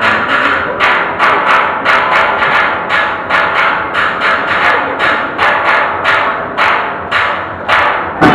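A steel orchestra's rhythm section keeping a steady percussion beat of sharp, even strikes, about four a second, with no pan melody yet.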